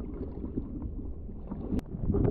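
Muffled underwater sound from a camera held below the surface: a steady low rumble of moving water, with one sharp click near the end.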